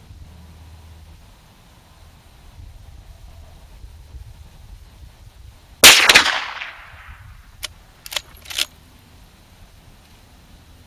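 A single rifle shot from a Marlin 1894 lever-action carbine in .357 Magnum, about six seconds in, ringing out and fading over about a second. It is followed by three short, sharp clacks.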